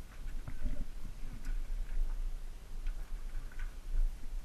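Scattered small clicks and scuffs of hands, boots and clothing against rock as a person squeezes through a narrow cave passage, over a steady low rumble.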